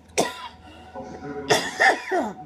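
A woman coughing twice, hoarse with a head cold: a short cough about a quarter second in, then a longer, louder one about a second and a half in.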